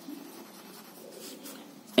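A pen writing on lined notebook paper, a faint scratching of the tip across the page as the words are written out.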